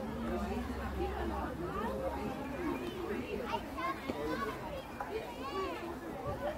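Children playing: several children's voices calling and chattering, some high-pitched, with a low steady rumble for the first couple of seconds.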